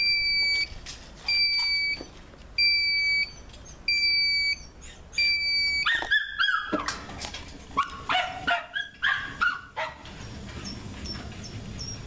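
Five evenly spaced electronic beeps, each about half a second long at one steady high pitch, from the buzzer of an ET sliding-gate motor's control unit. After the beeps a dog barks and yelps several times.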